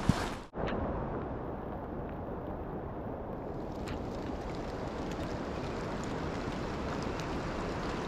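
Steady rushing noise of a river's flowing current, with wind buffeting the microphone. A brief click comes right at the start.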